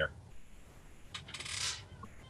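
A short click about a second in, then a brief high rustle lasting about half a second, over quiet room tone in a pause between speakers.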